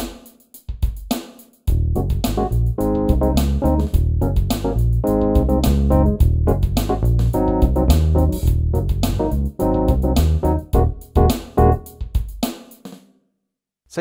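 Kawai DG30 digital piano in split-keyboard mode: an electric bass voice in the left hand and a classic electric piano voice in the right, played over the piano's built-in drum rhythm. The drum beat runs alone for the first couple of seconds, then bass and electric piano join, and the music stops shortly before the end.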